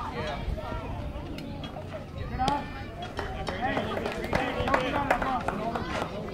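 Many voices of players, coaches and spectators at a youth baseball game calling out and talking over one another, none of it clear enough to make out words, with a few short sharp sounds mixed in.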